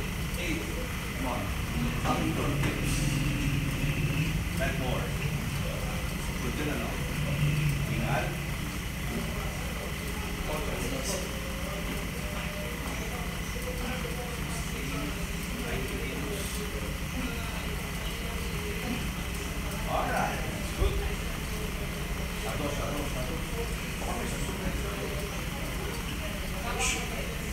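Indistinct background voices over a steady low hum, with a thin constant high tone and a few faint clicks and knocks.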